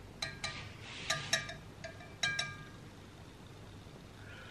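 A metal spoon clinking against the rim and side of an enamelled cast-iron pot of soup: a handful of short, ringing clinks, mostly in pairs, over the first two and a half seconds.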